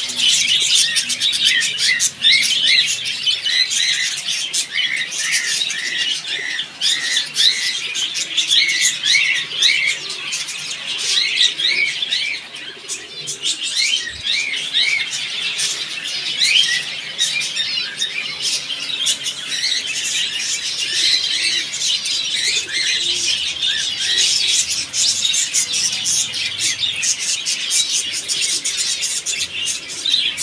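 A dense, continuous chorus of many caged small birds chirping, with short chirps overlapping one another throughout.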